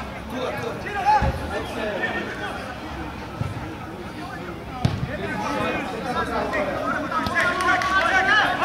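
Men's voices talking and calling out in open air, with a few dull thumps, the loudest about a second in and another just before the five-second mark.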